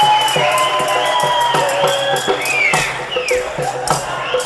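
Live Punjabi folk dance music: a dhol drum beating a fast, steady rhythm under a long held melody line.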